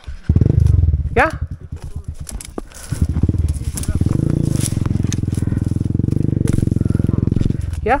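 Dirt bike engine running at low revs as a fast, even pulsing, louder for a moment near the start and then steady, until it cuts off suddenly shortly before the end.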